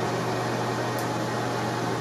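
Steady low hum with an even hiss, the room's background noise, with a single faint click about a second in.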